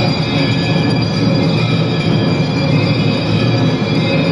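Many temple bells ringing together for aarti in a loud, continuous metallic din, with a dense low rumble beneath.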